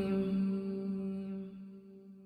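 A man's chanting voice holds the last note of an Arabic dua recitation, 'al-Ghafoor ar-Raheem', on one steady pitch. The note fades away over about two seconds.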